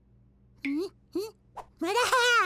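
Cartoon chick character's wordless voice: three short calls that rise and fall, then a longer, louder wavering call near the end.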